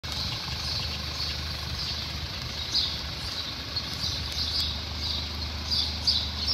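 2014 Audi Q5's engine idling steadily, with short high chirps from birds repeating over it.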